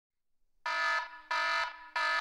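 Wrong-answer buzzer sound effect: three short buzzes about two thirds of a second apart, marking an answer as wrong.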